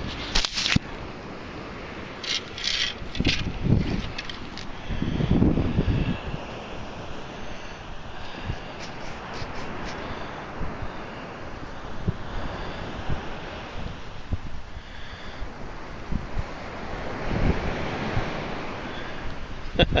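Wind buffeting the microphone over a steady wash of beach surf, with a few light clicks and rattles of handling in the first few seconds.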